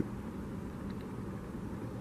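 Steady, even outdoor background noise with no distinct events.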